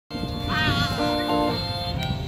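Live acoustic guitar and harmonica played together, the harmonica holding steady notes with one wavering, bending note about half a second in.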